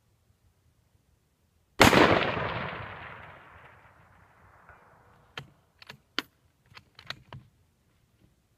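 A single shot from a .308 bolt-action rifle (a Georgia Precision Remington 700), very loud and sharp, its echo rolling away over about three seconds. A few seconds later comes a run of short, sharp clicks.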